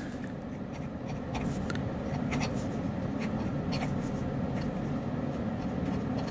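Fine-nibbed Hong Dian fountain pen writing on paper: faint, light scratching of the nib as the letters are formed, over a steady low hum.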